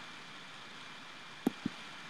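A low steady hiss of room tone, broken by two brief soft clicks about a second and a half in, a fifth of a second apart.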